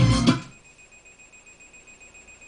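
FM radio broadcast with music and voice playing through the Gradiente R-343 receiver, cutting off suddenly about half a second in as the tuner is switched to another station and mutes. During the muted gap only a faint, steady high-pitched whine remains.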